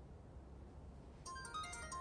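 A mobile phone ringtone starts about a second in, a quick melody of short electronic notes over a faint low hum.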